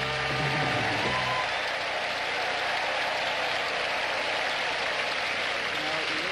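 Studio audience applauding steadily, greeting a contestant's game-winning answer. A short held musical chord sounds under the applause for about the first second and a half, then stops.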